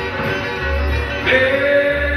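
Live country-style string band music: acoustic guitar with a washtub bass thumping about once a second. A singer comes in with a long held note about a second and a half in.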